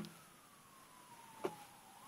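A faint, thin tone gliding slowly down in pitch, then beginning to rise again near the end, with a short knock at the start and another about a second and a half in.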